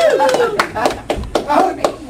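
A quick run of sharp handclaps, several a second, mixed with raised, unworded voices of a group.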